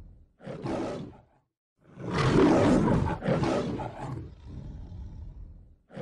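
Lion roar sound effect: a short call, then one long loud roar about two seconds in, followed by a string of shorter grunting calls that fade away.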